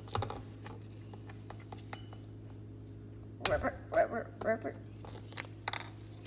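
Small plastic toys being handled and set down on a stone countertop, giving scattered light clicks and taps, with a child's voice murmuring briefly about halfway through.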